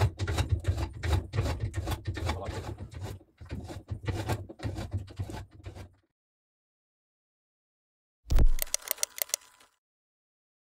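Irregular metallic clicks, clunks and sliding knocks as a homemade metal lathe's toothed change gear and carriage are worked by hand, stopping suddenly about six seconds in. After two seconds of silence, a short low boom comes near the end, followed by a quick run of sharp clicks.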